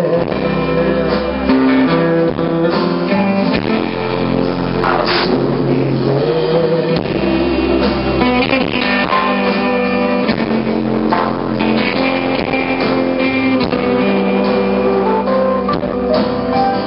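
A live band playing a guitar-led passage of a song, with strummed electric and acoustic guitars over keyboard and bass, loud and steady.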